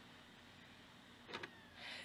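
Near silence: low room tone in the gap between sung notes, with one brief faint sound a little past a second in.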